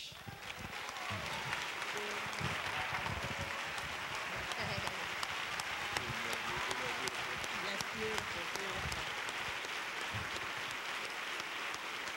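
Congregation applauding: dense, steady clapping that builds over the first second or so and then holds, with voices faintly mixed in.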